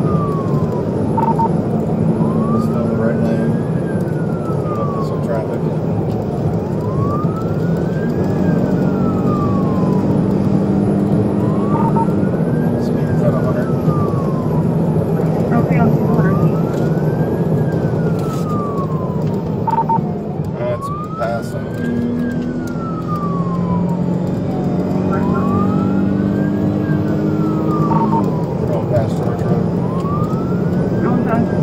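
Police car siren in a slow wail, each cycle rising for about a second and a half and falling for about three, repeating about every four to five seconds. It is heard from inside the pursuing patrol car's cabin over steady engine and road noise.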